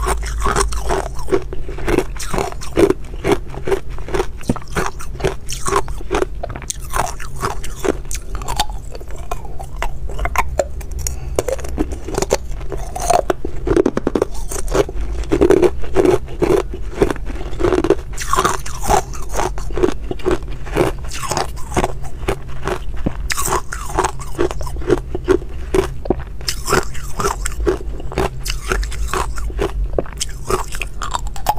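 Hard ice cubes bitten and crunched between the teeth, close-miked on a clip-on lapel microphone: a continuous run of sharp cracks and crunches, several a second, with chewing of the broken pieces.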